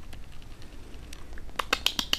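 A cat purring, a low steady rumble, while being stroked. A few sharp clicks and rustles come near the end.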